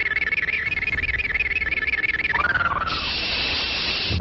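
Electronic sound effect for the Halilintar thunderbolt power in an old Indonesian martial-arts film: a rapidly warbling high tone that slides down in pitch about two and a half seconds in, then gives way to a steady hiss.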